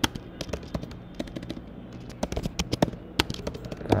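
Typing on a computer keyboard: a run of quick, irregular key clicks.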